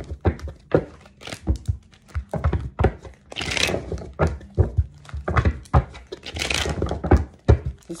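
A tarot deck being shuffled by hand: a string of sharp taps and knocks, with two short rustling bursts of cards sliding together, the first about three and a half seconds in and the second near six and a half.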